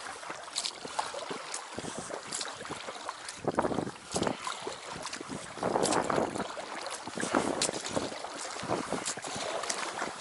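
Oars rowing an inflatable boat: the blades dip and pull through the water, with a splashing swell at each stroke and scattered drips, over wind on the microphone.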